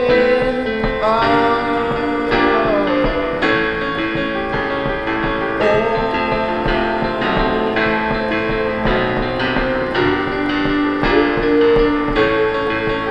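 Roland FP-4 digital piano playing a song in repeated chords, with a man's voice singing long held notes over it.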